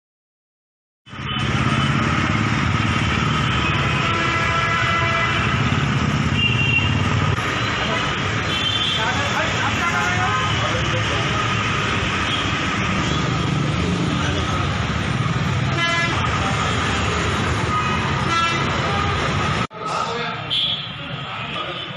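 Street traffic with vehicle horns honking repeatedly, starting suddenly about a second in and cutting off just before the end.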